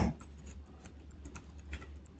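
Faint scattered light clicks and taps of a stylus working a pen tablet, over a low steady hum, with a short knock right at the start.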